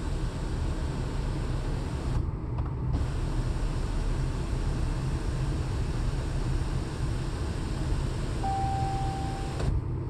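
Electric motor of a Jeep Cherokee's panoramic sunroof shade running as the roller blind retracts, heard as a steady hum inside the car cabin.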